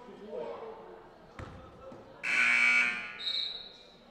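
Gym scoreboard buzzer sounding once for under a second, a harsh tone that is the loudest thing here, with a shorter high steady tone right after it. A single basketball bounce comes about a second before, over voices in the hall.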